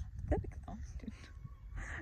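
Wind buffeting the microphone, a steady low rumble, with a short breathy sound near the end.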